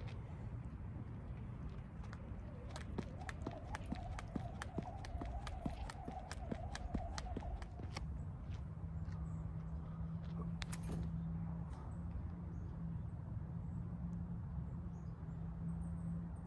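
Skipping rope slapping the ground in an even rhythm, about three strikes a second, stopping about halfway through. A faint steady hum follows.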